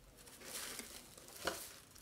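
Faint rustle of a non-woven fabric shoe bag being handled and pulled over a shoe, with a single light tap about one and a half seconds in.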